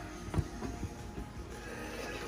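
Faint background music, with a light knock of a plastic spoon against the pot a little under half a second in as the brine is stirred.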